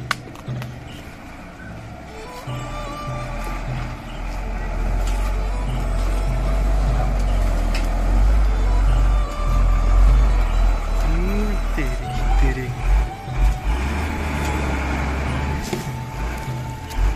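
Tata tipper truck's diesel engine labouring as the loaded truck reverses up a steep dirt track. A low rumble builds from about four seconds in, is loudest around ten seconds, then rises and falls several times as the driver works the throttle.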